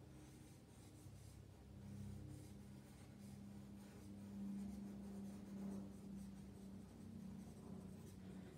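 Faint scratching of a hard graphite pencil sketching loose layout lines on drawing paper, with a low steady hum underneath.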